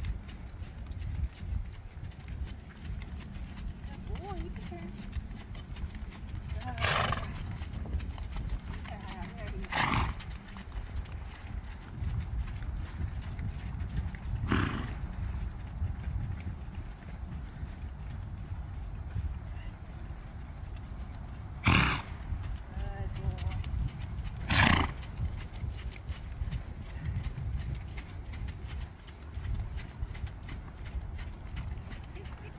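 Ex-racehorse trotting under a rider on a sand arena: a steady run of muffled hoofbeats, broken by five short breathy snorts, the last two the loudest.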